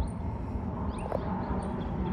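Outdoor background noise, a steady low rumble, with a few faint, short, high-pitched bird chirps.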